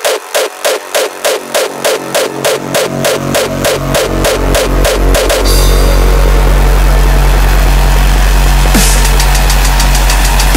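Hardcore techno track: a rapid even pulse of about four beats a second builds as the low end swells. About five and a half seconds in it gives way to a loud, continuous bass drone.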